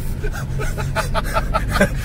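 Music from the car radio, a rapid run of evenly picked notes, over the steady low drone of the 2019 Ford Ka 1.0's three-cylinder engine and road noise in the moving cabin.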